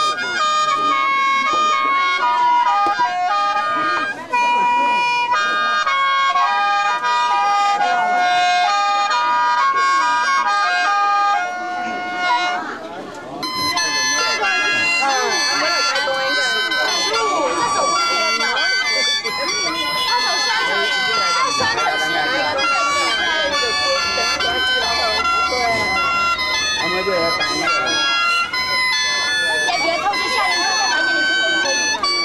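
Bamboo lusheng, a free-reed mouth organ, playing a melody of held reedy notes over a steady drone. It dips briefly about twelve seconds in, then resumes fuller and denser, with people's voices chattering underneath.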